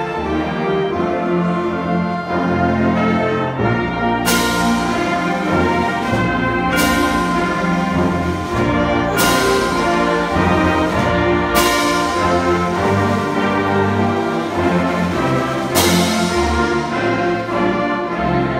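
High school concert band playing Christmas music, with brass and woodwinds holding full chords and tubas in the bass. Five loud accented hits that ring on fall about every two to three seconds.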